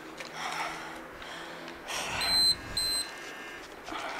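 Interval timer giving two short high-pitched beeps about half a second apart, the first one louder, between bouts of hard breathing.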